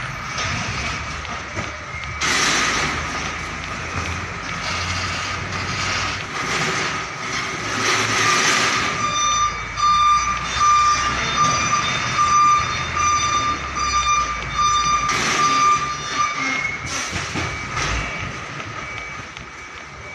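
Container tractor-trailer's diesel engine running under slow manoeuvring, with short bursts of hiss at intervals. A repeating high alarm beep sounds through the middle stretch.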